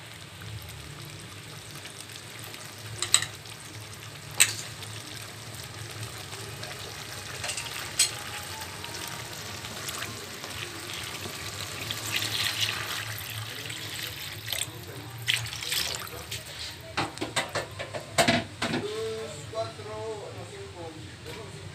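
Water poured from a container into a wok of simmering sardine and tomato sauce about halfway through, among several sharp knocks against the pan.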